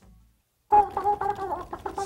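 A brief silence, then from just under a second in, a sudden run of chicken clucking and squawking, short pitched calls that waver and break.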